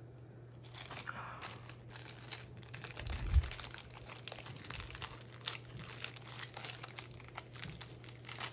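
Plastic packaging crinkling as it is handled, starting about a second in and going on in quick crackles, with one dull thump a little before halfway.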